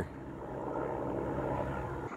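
Helicopter flying overhead, a steady drone of rotor and engine.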